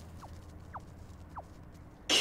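A quiet low hum with four faint, short chirps that each glide downward in pitch, spread unevenly across two seconds.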